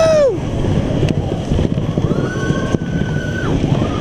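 Roller coaster train rumbling and rattling along its track. A rider's held whoop trails off just as it starts, and a higher-pitched held cry rises and falls from about two seconds in to three and a half.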